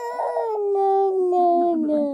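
A toddler's long, drawn-out whining cry, one sustained wail that sinks slowly in pitch, in protest at being told to go to bed.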